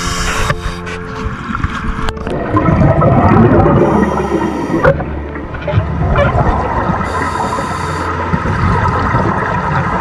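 Diver breathing underwater through a Kirby Morgan MK48 diving mask's demand regulator: a hiss with each inhalation, twice, and a rumbling gurgle of exhaled bubbles, loudest from about two to five seconds in.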